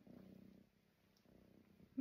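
A kitten purring faintly, a low steady rumble that dips for a moment about halfway through.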